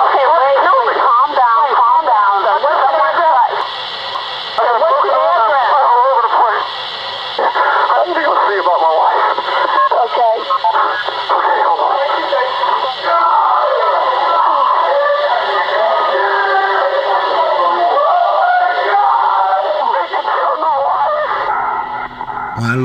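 Voices with music behind them, thin and narrow in tone like an old broadcast or archival recording, with no clear words.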